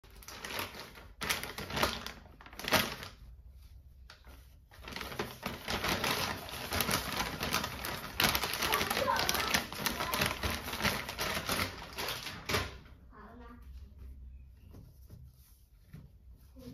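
Soft plastic wet-wipe packet crinkling and rustling in loud spells as it is opened and wipes are pulled out and handled. There is a lull a few seconds in. The crinkling stops abruptly near the end, leaving only faint handling sounds.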